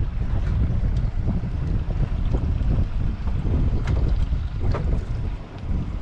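Wind buffeting the microphone at sea: a loud, uneven low rumble throughout, with a few faint clicks.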